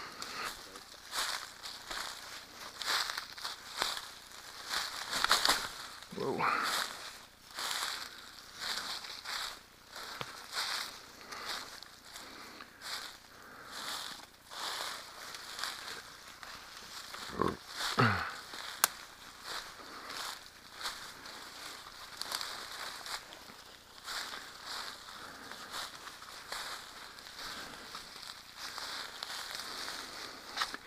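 Footsteps crunching and scuffing through dry leaf litter and low brush down a steep slope, with the plants rustling, in uneven steps. A short "whoa" about six seconds in, and another brief cry of the voice a little past the middle.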